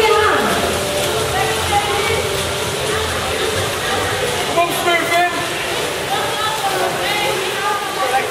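Voices calling out over the splashing of water polo players swimming in a pool.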